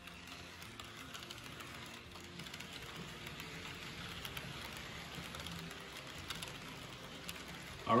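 HO-scale model freight train rolling past on the track: a faint, steady rattle with fine clicking from the cars' wheels running over the rails, and a low hum underneath.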